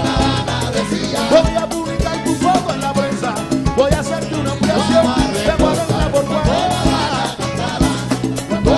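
A Cuban timba band playing live: a dense salsa groove with sharp percussion strikes under a bending melody line.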